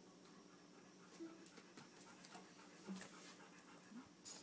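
Near silence: room tone with a faint steady hum and a few faint clicks and rustles.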